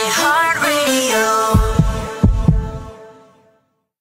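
Short music jingle at the close of a radio ad: a brief gliding melodic phrase, then a held chord punctuated by a few low thumps, fading out to silence about three and a half seconds in.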